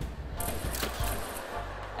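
Background show music with a steady low bass, with a short burst of noise between about half a second and a second in.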